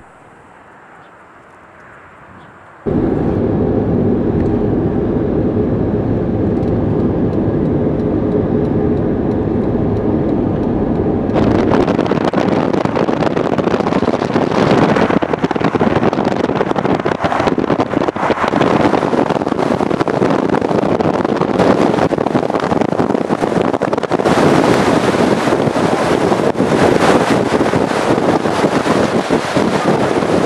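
Engine drone and road noise of a moving car, heard from inside, starting abruptly about three seconds in after a quieter stretch. From about eleven seconds in, a louder steady rush of wind and road noise takes over.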